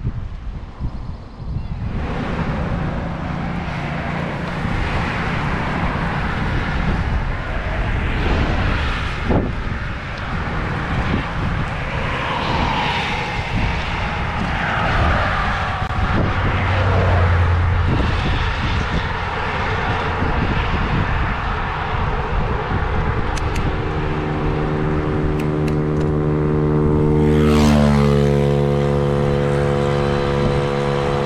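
Wind rushing over the microphone of a moving bicycle, with road traffic going by. Over the last few seconds a motorcycle's engine drone grows louder, peaks about three-quarters of the way through and drops in pitch as it overtakes.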